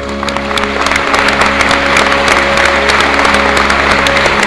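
Theatre audience applause breaking out and growing louder over the held final chord of the orchestra and organ, with many individual claps audible.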